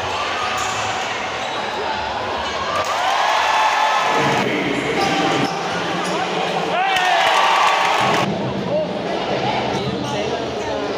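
Basketball game on a hardwood court, heard amid the chatter and shouts of a packed gym crowd. A ball bounces, and shoes give short gliding squeaks, the clearest about three and seven seconds in.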